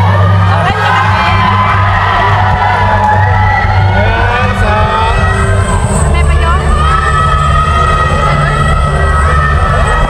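Loud music from a stage sound system, with long held bass notes that change about two-thirds of the way through, under a crowd of excited voices and cheering close by.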